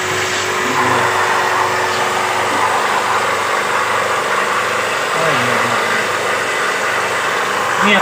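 Electric jet-washer pump for AC cleaning running steadily with a constant hum.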